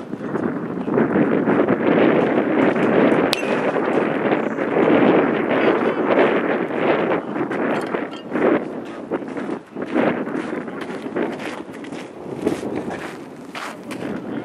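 Wind buffeting the microphone in uneven gusts, with one sharp click about three seconds in.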